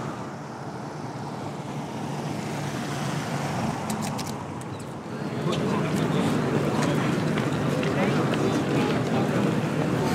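Outdoor city ambience recorded on a stereo microphone pair: road traffic going by, then, from about five seconds in, the louder chatter of a crowd of people talking nearby.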